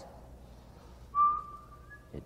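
A thin whistle-like tone about a second long, held on one pitch and lifting slightly at the end.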